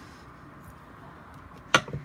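Quiet handling, then one sharp knock near the end as a clear acrylic stamp block, with a rubber stamp mounted on it, is set down on a cutting mat.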